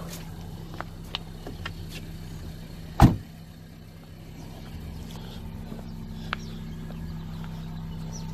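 A car door shutting with one loud thump about three seconds in, over the steady low hum of an idling car engine, with a few light clicks.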